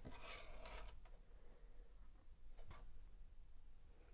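Faint handling noise as paintbrushes are picked up and laid down on a wooden desk: a brief rustle in the first second, then a light tap a little under three seconds in.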